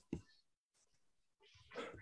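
Near silence on a video call, with a very short faint sound just after the start and a brief faint sound near the end.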